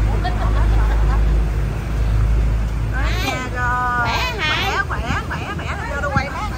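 Several people chatter over the low, steady rumble of an idling vehicle engine, which cuts out a little over three seconds in. Right after, a high-pitched voice calls out with a rising and falling pitch.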